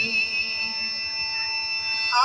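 Steady held tones of the instrumental accompaniment to a devotional song, sustained in a pause between sung lines with no voice.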